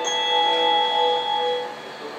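A railway platform chime plays over the station loudspeakers: the closing chord of a short bell-like melody rings for about a second and a half, then fades.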